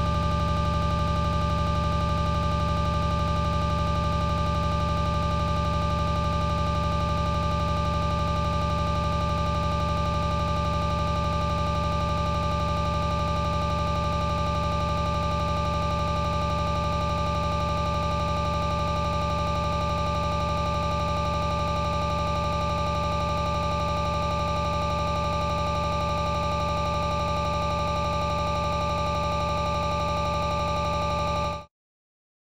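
A steady electronic drone of several pitches held together, like a sustained synthesizer chord over a low hum, unchanging throughout.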